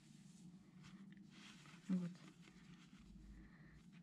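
Quiet room with a faint rustle of crocheted cotton fabric being handled, and one short spoken word about two seconds in.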